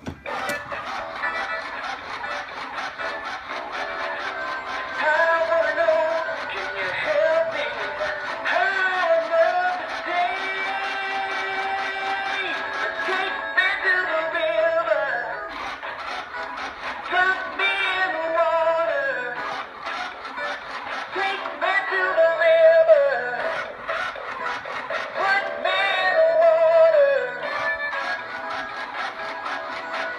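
Big Mouth Billy Bass singing-fish toy playing its recorded song, a sung melody over a backing track from its built-in speaker. The song starts just after a click as the button is pressed.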